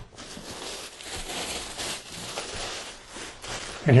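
Plastic packaging bag crinkling and rustling as it is pulled off by hand to unwrap a soft case, a steady crackly rustle throughout.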